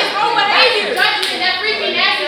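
Several people talking over one another, with two sharp hand claps a moment apart about a second in.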